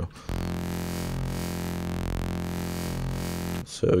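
Serum software synth holding one low sustained note on a hand-drawn custom wavetable that has been spectrally morphed, so its frames fade smoothly into one another. The tone swells slowly in brightness and stops about half a second before the end.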